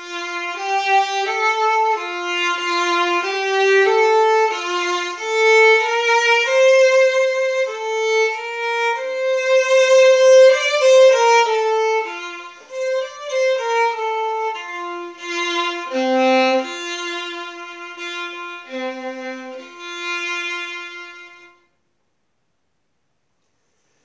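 Solo violin bowed, playing a simple beginner's song as a single melody line of held notes; the playing stops a couple of seconds before the end.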